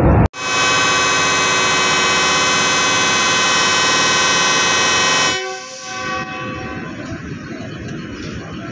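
Diesel locomotive air horn sounding one long, steady blast of about five seconds, the signal that the train is departing; it cuts off sharply, leaving lower background noise.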